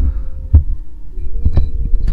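Handling noise: two deep thumps and a few sharp clicks as the camera and the truck are moved about, over a faint steady hum.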